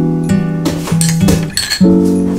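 Acoustic guitar background music, over which a metal spoon clinks several times against a small ceramic cup while stirring chopped cucumber, the clinks bunched in the middle.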